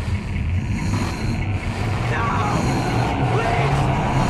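Loud, steady rumbling noise of film-trailer sound effects, with faint gliding tones about halfway through.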